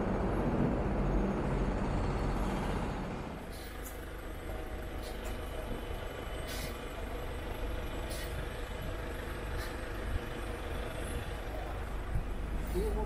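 City street traffic: a large vehicle passes loudly for about the first three seconds, then quieter traffic noise follows with several short high hisses.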